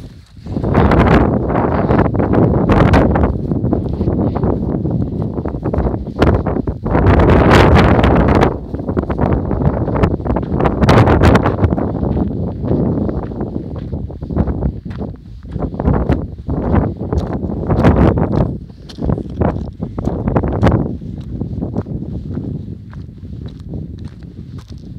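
Wind buffeting the microphone in strong, uneven gusts, with the footsteps of someone walking. The gusts ease off near the end.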